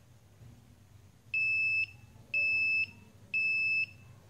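Buzzer on an ATmega328 RFID bike anti-theft board beeping three times in a steady high tone, each beep about half a second long and a second apart. The three beeps signal that the RFID tag has been read and the relay has switched on, putting the system into anti-theft protection.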